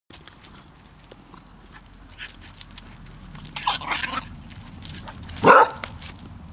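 Dogs playing rough on grass: rustling and scuffling, a rough vocal noise near the middle, then one loud short bark near the end.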